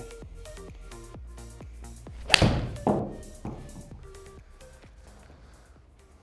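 Titleist T300 iron striking a golf ball once, a single sharp hit about two and a half seconds in, over background music with a steady beat that fades away.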